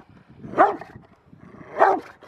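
Rottweiler barking at a bite sleeve in protection training: two loud, short barks a little over a second apart.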